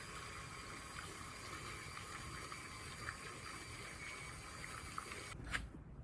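Stand mixer running steadily, its wire whip churning cream that has broken into butter clumps and buttermilk, with a wet sloshing; it stops shortly before the end.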